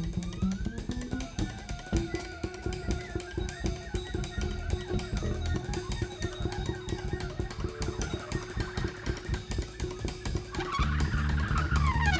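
Live free-improvised jazz from a quartet of cornet, cello, double bass and drum kit. Busy drumming runs throughout, and one long note is held for several seconds in the middle. About eleven seconds in, low bass notes come in and the music gets louder.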